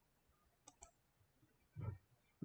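A computer mouse button clicked, a quick press-and-release pair about two-thirds of a second in, against near silence. Just before the end comes a brief, low vocal sound.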